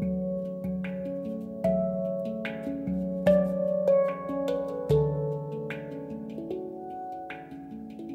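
Handpan (Ayasa, F#3 Low Pygmy tuning) played by hand: a flowing melody of finger-struck notes that ring on and overlap, with deep low notes sounding about once a second, the playing growing softer over the last few seconds.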